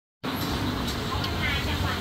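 Road traffic noise on a city street: a steady low rumble of passing vehicles, with faint voices mixed in.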